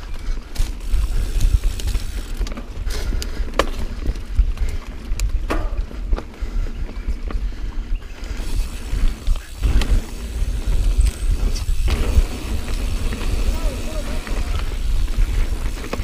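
Mountain bike ridden fast down dirt singletrack, heard from a handlebar-mounted camera: a constant deep rumble of wind and trail on the microphone, tyres rolling over dirt, and scattered clicks and clacks from the bike over bumps.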